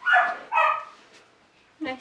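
Belgian Malinois barking twice in quick succession, two loud, short barks.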